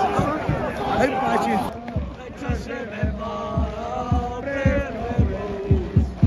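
Football crowd in the stands, many voices shouting over one another, then singing a chant together over a bass drum beating about twice a second from about two seconds in.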